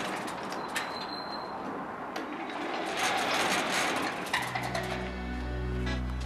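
Outdoor background noise with a few short clicks and a brief high chirp, then soft acoustic guitar music starts about four and a half seconds in.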